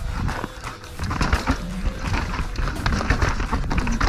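Downhill mountain bike descending a rocky dirt trail: tyres rolling and crunching over dirt and stones, with many quick knocks and rattles from the bike over the bumps and a steady low rumble.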